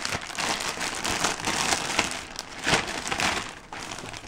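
Thin clear plastic bag crinkling and rustling as it is pulled off a cardboard box, with many small crackles throughout.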